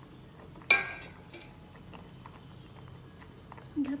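Stainless steel utensils against a steel cooking pot: one sharp metallic clink that rings briefly, about three-quarters of a second in, then a lighter tap and a few small ticks, over a faint steady background.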